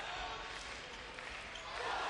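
Steady hubbub of a crowd in an indoor sports arena, swelling slightly near the end.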